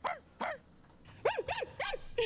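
A person imitating a dog's bark: two short yaps near the start, then three quick, high yaps, each rising and falling in pitch, a little after a second in.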